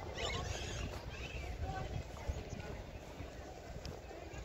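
Distant voices of people milling about, faint and scattered, over a steady low rumble.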